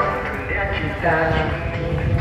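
A group of girls singing a song together over a backing track with a rhythmic beat.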